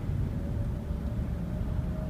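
A 2003 Chevrolet Suburban's engine and road noise heard from inside the cab, a steady low rumble as it accelerates gently on barely any throttle. A faint thin whine rises slowly in pitch alongside it.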